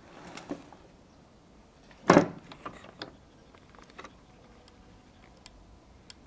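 Wooden parts of a beech-wood toy timber truck knocking and clicking as it is handled, with one louder wooden knock about two seconds in.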